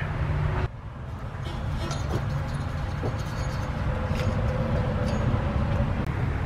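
Steady low outdoor background rumble with a few faint clicks, changing abruptly about a second in.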